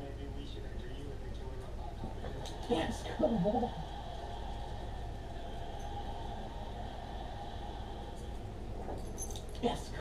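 Television dialogue playing at low level in the room, a steady murmur of voices, with a short spoken phrase about three seconds in and a few sharp clicks near the end.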